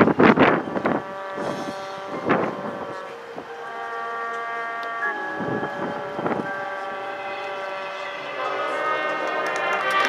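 Marching band brass section holding long sustained chords, broken by loud accents in the first second and again around the middle. Near the end the full band swells louder.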